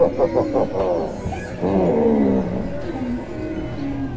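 Fairy-tale ride soundtrack from a scene loudspeaker: music with a gruff, animal-like voice effect. The voice comes as a quick run of short pulses in the first second, then one long call falling in pitch about two seconds in.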